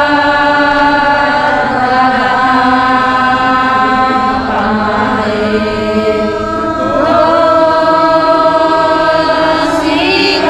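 A group of women singing a prayer chant together in unison, with long held notes; the melody moves to a new phrase about halfway through and again near seven seconds.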